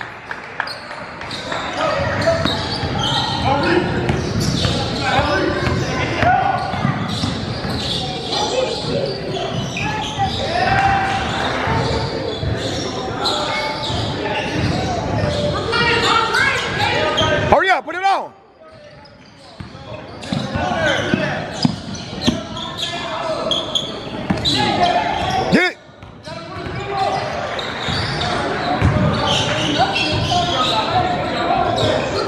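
Live basketball game in a large, echoing gym: a basketball bouncing on the hardwood floor among overlapping shouts and chatter from players, coaches and spectators. The sound drops out briefly twice, about two-thirds of the way in and again near the end.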